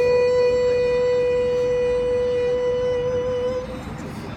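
A male busker's voice holding one long, steady high note over band accompaniment, fading out near the end.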